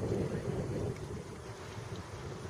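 Wind buffeting the camera microphone: an uneven, gusting low rumble.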